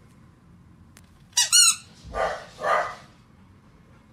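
A pet animal's short, high, wavering squeal, then two short rough calls about half a second apart.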